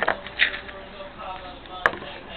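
Two sharp clicks about two seconds apart, with a short scratchy noise in between.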